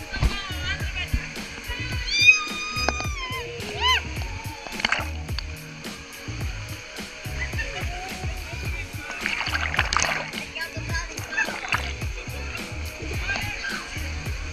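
Water splashing and rushing during a water-slide ride, with a high voice calling out about two seconds in and bursts of splashing around the middle. Music with a steady beat plays in the background.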